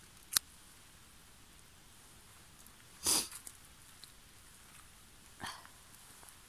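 Mushroom-picking handling noises: a sharp click just after the start as a knife cuts a funnel chanterelle stem, then two brief rustles about three and five and a half seconds in.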